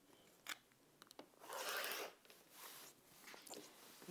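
Rotary cutter rolling along an acrylic ruler and slicing through the layers of a quilted table runner on a cutting mat. It makes a faint gritty crunch of about half a second near the middle, with a couple of soft clicks before it and shorter scrapes after.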